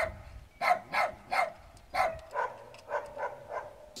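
A dog barking repeatedly, about nine short barks at roughly two a second.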